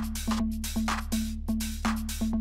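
Tech house dance music: a steady electronic beat with evenly spaced drum hits, bright hissing hits between them and a held low synth tone underneath.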